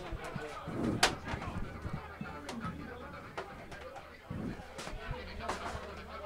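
Faint open-air football pitch ambience: distant voices of players and spectators, with a few sharp knocks, the loudest about a second in.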